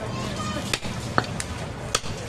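A large cleaver chopping goat meat into pieces on a wooden stump block: four sharp chops at uneven intervals.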